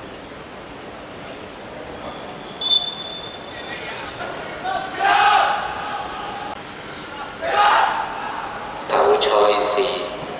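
Young footballers in a team huddle shouting together, three loud group shouts a couple of seconds apart over steady outdoor noise, like a rallying cry. A brief shrill tone sounds before the first shout.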